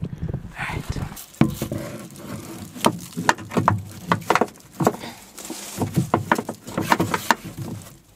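Irregular clicks, knocks and scrapes of a propane hose's metal fitting being pushed up through a rough drilled hole in a van's floor.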